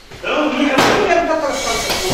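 A sharp bang about a second in, amid loud shouting.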